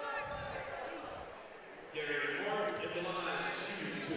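A basketball bouncing a few times on a hardwood gym floor in the first second. From about two seconds in, a person's voice calls out in a long, held tone in the echoing gym.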